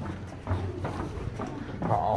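Footsteps on a wet concrete tunnel floor, a few steps a little under half a second apart, with heavy breathing from climbing.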